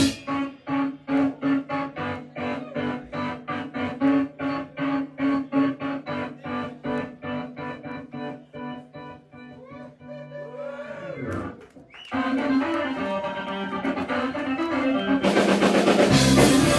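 Live electric organ playing rapid staccato chords, about three a second, over a held low note, gradually getting quieter. The organ then makes swooping pitch bends and holds a chord that swells up, and the full band with drums comes back in near the end.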